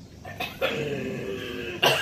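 A woman's long, wordless vocal groan, then a sharp cough near the end: reactions to the burn of an extreme hot sauce.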